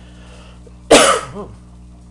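A woman's single loud cough about a second in, sharp at the onset and trailing off within half a second.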